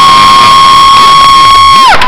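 A spectator's long, loud, high-pitched shriek from close to the recorder, held on one pitch and falling away near the end, cheering a graduate.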